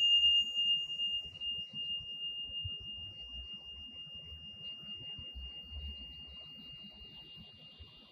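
Tingsha cymbals ringing out after a single strike, one clear high tone slowly fading away over about seven seconds.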